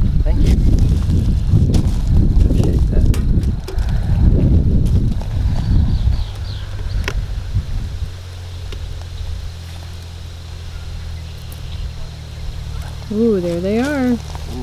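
A bee smoker's bellows squeezed in a few puffs: low rushes of air with light clicks, over about the first six seconds. After that a steady low hum remains.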